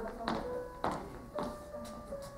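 High-heeled footsteps on a wooden stage floor, about two steps a second, dying away near the end as the walker stops, over music with long held notes.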